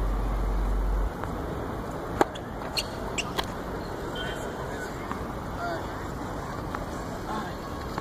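Tennis ball struck by rackets and bouncing on a hard court: a few sharp pops a little over two seconds in, about half a second apart, over steady outdoor background noise with faint distant voices.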